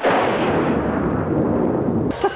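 An explosion-like boom sound effect: a sudden blast followed by a rumbling tail that cuts off abruptly at the end.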